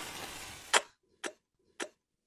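A struck match flaring with a hiss for under a second, then three short clicks about half a second apart as a pipe is puffed alight.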